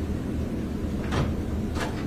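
Steady low courtroom room rumble with two short rustles of paper, about a second in and again near the end, as papers are handled at the counsel table.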